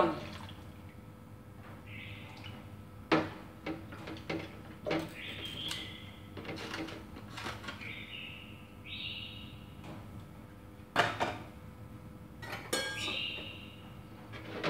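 Milk being poured in several short pours, from a carton into a metal condensed-milk can and from the can into a glass mixing bowl, with a few sharp knocks and clinks as the can is handled and set down on the counter.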